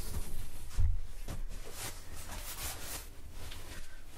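Handling noise from a large cardboard shipping box being shifted and set aside, with light rustling and a dull thump about a second in.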